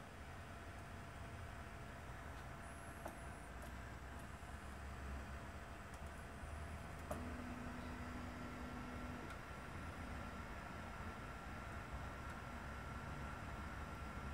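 3D printer running an auto bed-levelling routine with a clone BLTouch (3DTouch) probe: a faint steady hum of motors and the hotend cooling fan, with a few light clicks and a low steady tone for about two seconds about halfway through as the head moves between probe points.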